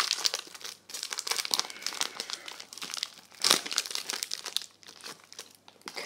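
Foil wrapper of a Pokémon card booster pack crinkling as it is torn open by hand, a rapid irregular crackle with one louder rip about three and a half seconds in, thinning out near the end.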